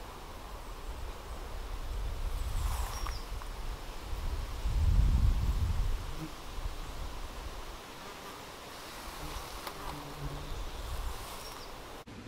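Flying insects buzzing close to the microphone around flowering ragwort, the buzz coming and going as they pass, over a low rumble that swells about five seconds in.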